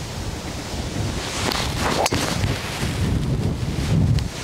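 Steady wind buffeting the microphone, with one sharp crack about two seconds in: a driver striking a golf ball off the tee.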